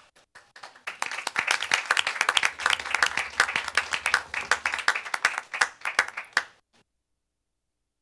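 A small group of people applauding: the clapping starts about a second in and dies away after about six and a half seconds.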